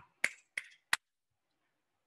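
Three short, sharp clicks, about a third of a second apart, in the first second.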